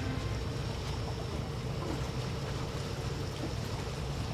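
Steady low rumble of wind and lake water on an open shoreline, with no distinct events.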